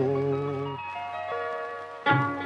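Malayalam film song: a male voice holds the last sung note of a line until just under a second in, then a short instrumental phrase of clear, sustained notes stepping downward.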